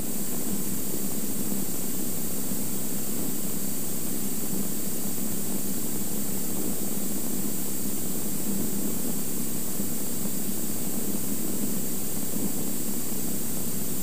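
Steady drone of a Cirrus SR22's six-cylinder piston engine, propeller and rushing airflow, heard from inside the cockpit in flight. The level stays even throughout, with no changes in power.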